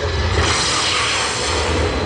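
Recorded show soundtrack played loud over a hall's sound system: a deep rumble under a steady hiss, with no voice.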